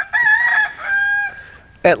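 A rooster crows once, a loud cock-a-doodle-doo that ends in a long held note fading out after about a second and a half.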